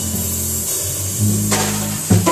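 Upright double bass plucking held, changing low notes in a slow jazz ballad, with the drum kit keeping time on the cymbals. A sharper drum hit comes about one and a half seconds in.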